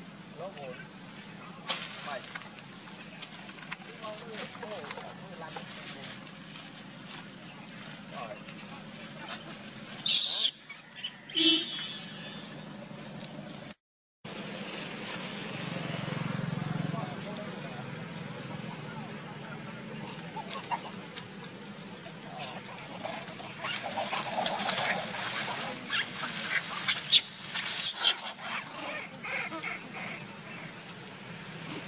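Long-tailed macaques squealing and screeching in short, loud, high-pitched bursts, about ten seconds in and again in a cluster near the end. The sound cuts out for a moment about halfway through.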